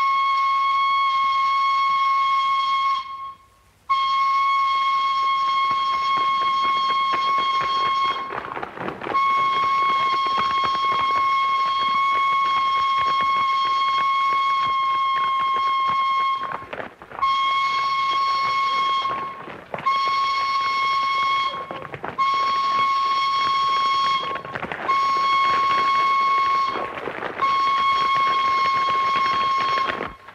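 Colliery steam whistle at the pithead blowing one steady high note, in three long blasts and then five shorter ones of about two seconds each, with brief breaks between them. It is the alarm for a disaster underground, a flooding of the pit.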